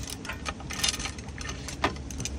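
Light clicks and taps of fishing rod sections and a spinning reel being handled and fitted together on a tabletop, a few separate clicks with the sharpest near the end, over a low steady rumble.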